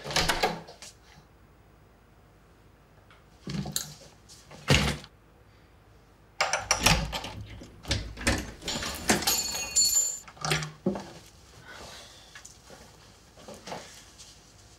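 An interior door handled and opened, a sharp clunk at the start, followed by scattered knocks, clicks and rustles of movement, busiest in the middle, with a brief high metallic jingle.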